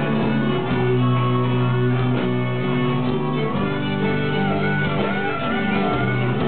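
A rock band playing live, guitars holding chords, with a wavering high melody line in the second half.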